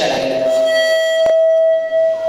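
Microphone feedback through the PA system: one steady high whistle held for about two seconds, with a sharp click partway through.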